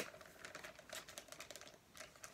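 Faint, irregular light clicks and crinkles of plastic soft-bait packaging being handled.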